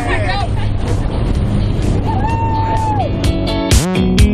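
Steady drone of a small jump plane's engine heard from inside the cabin, with voices over it. About three seconds in, strummed guitar music comes in.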